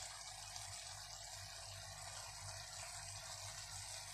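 Chicken pieces frying in an aluminium kadai, a faint steady sizzling hiss.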